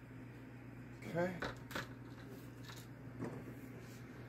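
A few light knocks as a halved watermelon is turned over and set down on a cutting board, with a low steady hum underneath.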